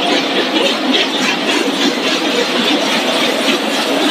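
Tortilla-chip production line machinery running at full work: a loud, steady mechanical clatter with a fast, even rattle.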